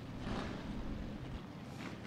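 Faint, low rumble of the IMCA Hobby Stock race cars' engines as the field rolls slowly in a pack, heard well in the background.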